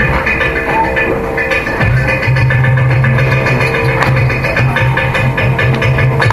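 Carnatic classical music on electric mandolins, a plucked melody running over rhythmic percussion strokes, with a strong pulsing low tone entering about two seconds in.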